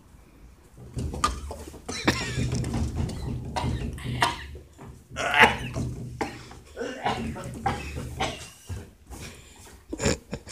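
Two men coughing and gagging in irregular bursts on mouthfuls of dry ground cinnamon, starting about a second in.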